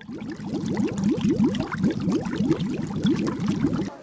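Bubbling water sound effect: a dense run of short rising bubble blips that stops suddenly near the end.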